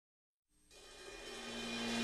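Background music fading in from silence about three-quarters of a second in, growing steadily louder, with sustained notes under a cymbal-like wash.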